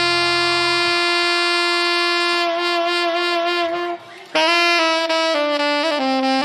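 Instrumental break in an arrocha/seresta song. A saxophone lead holds one long note for about four seconds, drops out briefly, then plays a stepping melody. A bass line sounds under it at the start.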